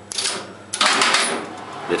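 Electromechanical relays and contactors in an Express Lifts relay-logic lift controller clattering as a landing call is registered and the lift starts up. A sudden loud burst of clatter comes about three-quarters of a second in and dies away over the next second.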